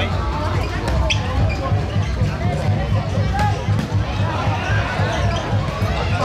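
Volleyball being struck by hand during a rally, a couple of sharp smacks over spectator chatter and background music with a steady low beat.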